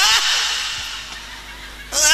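A man's drawn-out, groaning mock cough ('uh') through a PA system, imitating a struggling person's cough; it ends just after the start and trails off into a fading hiss. Near the end another such vocal sound begins.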